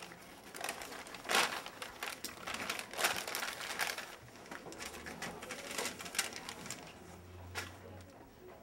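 Irregular rustling of paper and small knocks from handling at a school desk, several short bursts spread across the moment.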